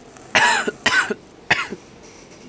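A person coughing three times, loudly, each cough starting sharply and trailing off.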